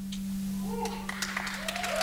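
Studio audience starting to clap and whoop about a second in, the applause and cheering building toward the end, over a steady low hum.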